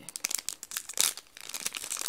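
A shiny Ooshies blind bag crinkling as fingers pick at its top seam to open it, a dense run of sharp crackles with the loudest about a second in.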